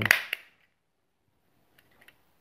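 Two sharp clicks close together from hands working a rolled cylinder of plastic garden netting, then near silence with faint ticks near the end.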